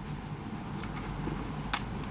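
Steady room noise of a large hall with a low rumble, and a couple of faint sharp clicks, the clearest near the end.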